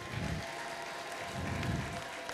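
Faint background of a large congregation hall: a low, even crowd noise with a faint steady held note and two soft murmurs of distant voices.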